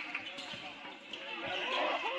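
Basketball bouncing on a hardwood gym floor during play, with a few sharp knocks. In the second half, players and spectators begin shouting.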